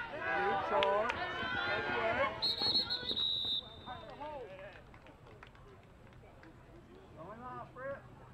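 Several spectators shouting and cheering over one another during a football run play. A referee's whistle blows one steady blast about two and a half seconds in, lasting about a second. After that only scattered voices remain.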